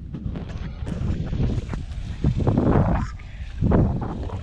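Rumbling wind and handling noise on a hand-held camera's microphone as it swings against clothing, with a few light clicks. There are two louder rushes, one just past halfway and one near the end.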